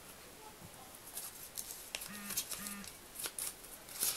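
Small folded paper slip being unfolded by hand: faint crinkling and crackling of paper in a string of short crackles from about a second in. Two short hummed notes from a voice in the middle.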